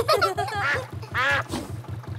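Cartoon duck quacking several times, a quick cluster at the start and a longer call just past the middle, over the low steady chugging of a narrowboat engine.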